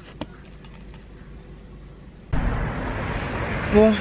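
Quiet room with one faint click as a cake is peeled out of a pink silicone mould. A little over two seconds in, a sudden cut to loud outdoor street noise, a steady rushing hiss, with a woman's voice starting near the end.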